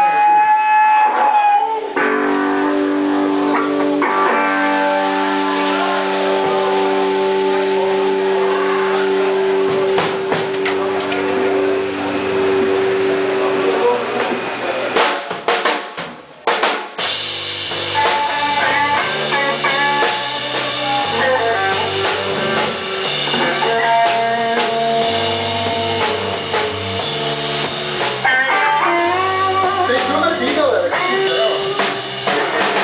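Live rock band with electric guitar, bass and drum kit. Held guitar chords ring out through the first half, and a few drum hits lead into a brief drop-out just past halfway. The band then starts a blues, with a stepping bass line under drums and guitar.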